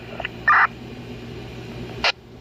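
Police radio traffic from a BTECH handheld radio's small speaker: a single clipped word about half a second in, then the steady hiss and hum of the open channel between words, ending in a short sharp crackle.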